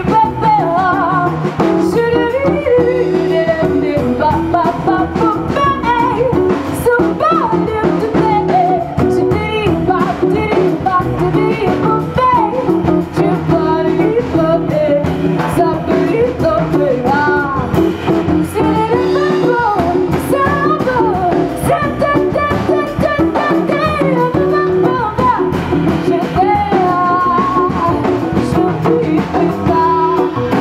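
Live jazz: a woman sings into a microphone, her melody gliding up and down over a plucked double bass and a light drum-kit pulse.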